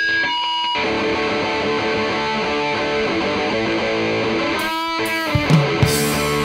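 Punk rock song starting suddenly on a distorted electric guitar riff. Cymbal crashes and a heavy low drum-and-bass part come in near the end.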